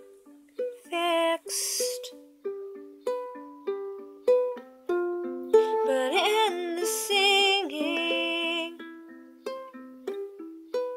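Ukulele picked in a slow, steady pattern of single notes. A voice sings a short phrase about a second in, then a longer one from about six to nine seconds with a wavering vibrato.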